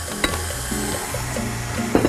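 Stand mixer motor running at low speed while a dry flour and ground-nut mixture is added to the bowl, over background music with a stepped bass line.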